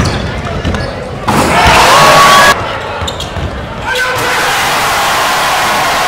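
Basketball dribbled on a hardwood gym floor, with gym crowd noise and voices that swell loud twice, the second time staying loud.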